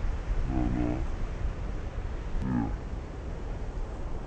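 Two short, low, wordless vocal sounds from a man, about half a second in and again near the middle, over a steady low rumble of wind on the microphone.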